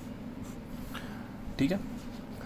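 Faint scratching of a ballpoint pen on notebook paper, as a word is finished on the page.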